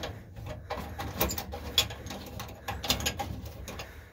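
Irregular clicks, taps and scrapes of a hand tool and hands working at a panel of an equipment cabinet, over a steady low hum.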